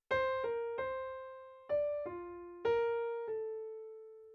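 Piano playing a one-note-at-a-time right-hand melody of seven notes: C, B flat, C, D, down to F, then B flat and A. Each note is struck and left to ring, and the last note is held.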